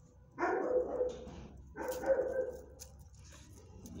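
A dog barking twice, two drawn-out calls about a second and a half apart, each starting sharply and falling in pitch.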